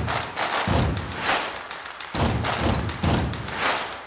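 Outro music made of deep thuds with swooshing tails, about seven hits spaced half a second to a second apart.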